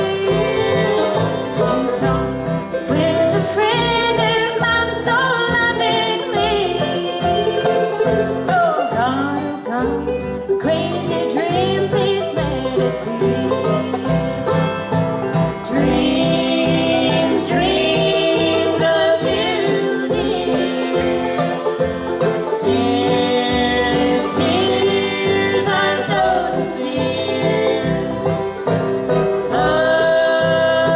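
Live bluegrass band playing a tune: fiddle, mandolin, acoustic guitar, upright bass and banjo together.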